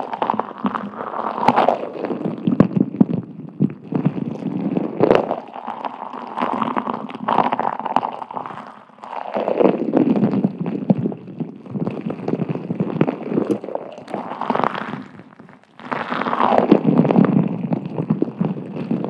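A clear plastic sphere full of small white beads turned and tilted close to the microphone: repeated swooshing rushes as the beads slide through it, each sinking in pitch, with small clicks of long acrylic nails on the shell.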